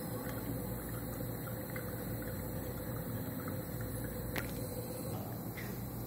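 Steady low hum and hiss of room and equipment noise, with a single faint click about four seconds in.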